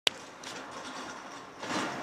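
A sharp click right at the start, then steady outdoor street background noise with no engine running yet; a louder rush of noise comes in near the end.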